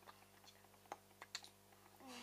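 About half a dozen faint, irregular clicks and taps, as of fingers tapping on an iPod's touchscreen.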